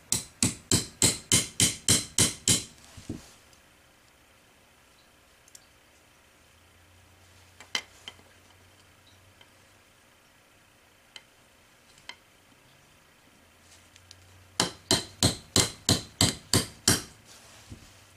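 A small hammer taps a steel pin into the steel lower tang assembly of a Winchester Model 94AE, driving it through the trigger stop safety. There are two runs of quick, even taps, about five a second: one at the start and one about fifteen seconds in. A few faint handling clicks fall between them.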